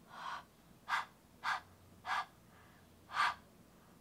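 Five short, soft breathy puffs of a person's breathing, spaced about half a second to a second apart.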